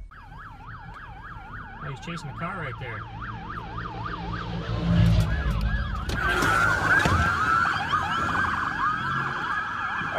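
Police car sirens in a fast yelp, rising and falling about four times a second. From about six seconds in several sirens overlap, over the low rumble of vehicles.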